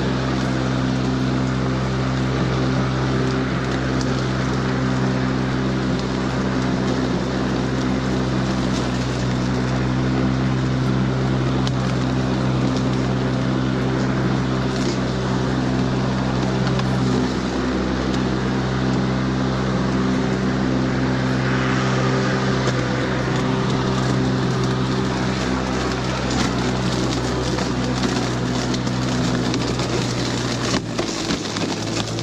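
Cordless electric push lawn mower running steadily while cutting dry grass: a constant motor and blade hum with a grassy hiss over it.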